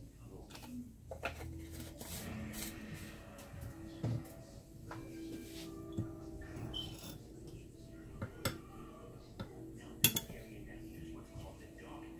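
Light clinks and knocks of kitchen utensils and containers being handled, a handful of them spaced a couple of seconds apart, as measuring spoons and ingredient containers are picked up and set down.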